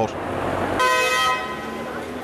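A vehicle horn sounds once in a short honk a little under a second in, over steady city traffic noise.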